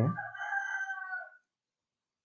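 A faint, single drawn-out animal call lasting about a second and a half, starting as the last spoken word trails off.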